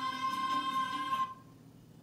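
Children singing one long held high note over a musical backing, heard through a TV speaker; the song ends abruptly a little over a second in, leaving faint room noise.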